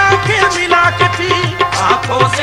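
Qawwali music between sung lines: a held, ornamented melody over a steady tabla rhythm.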